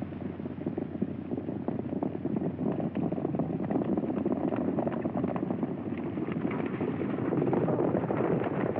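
Hooves of several horses galloping, a dense, rapid drumming that grows louder over the first couple of seconds and then holds, heard on a muffled early film soundtrack.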